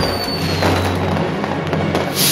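Hand-lit New Year's fireworks going off in a crowd, with a thin high whistle that falls slightly in pitch over the first half second or so.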